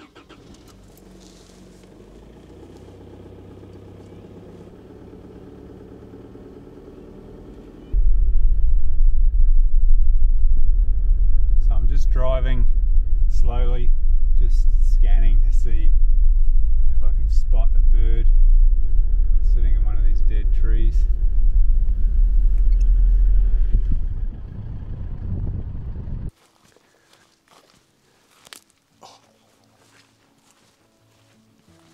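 An SUV driving off along a gravel road, heard quietly from outside at first. From about eight seconds in comes the loud, steady, low rumble of its engine and tyres on gravel, heard from inside the cabin. It cuts off suddenly near the end.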